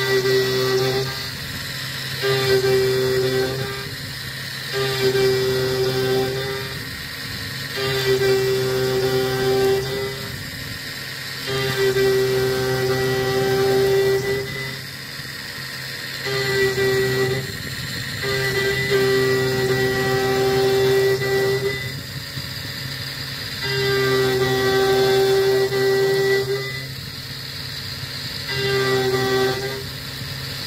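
CNC mill's half-inch three-flute end mill cutting metal at 39 inches a minute, giving a steady high singing tone that comes and goes every one to two seconds as the cutter moves in and out of the cut. A lower hum from the spindle runs under it.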